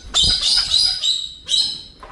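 Galah cockatoo giving loud, high-pitched calls in two runs, the second shorter, about a second and a half in. A low rumble of movement sounds as the first call begins.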